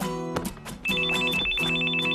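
Telephone ringing with a rapid trilling two-tone ring, starting just under a second in, over strummed acoustic guitar music.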